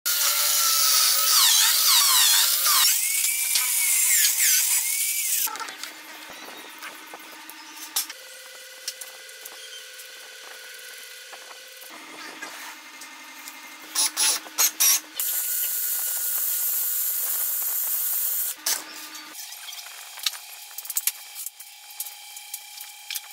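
Corded electric drill mounted in a homemade wooden drill press, boring into a wood block with a hole saw, loud with a whine that bends up and down for about the first five seconds. After that come quieter handling sounds of wood parts and a second loud spell of machine noise in the middle. Near the end, scissors snip a sanding belt.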